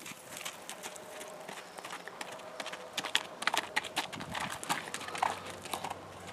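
Horse hooves striking dirt at a walk, an uneven run of hoofbeats that is busiest in the middle seconds.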